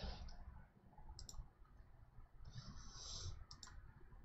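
Faint computer mouse clicks: a quick double click about a second in and another near the end, with a short soft hiss between them.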